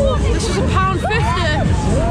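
Funfair ride noise: loud pumping music with a heavy low beat, and a jumble of voices calling and whooping over it.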